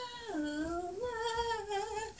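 A woman humming a slow tune in long held notes, the pitch dropping about a third of a second in and rising again about a second in.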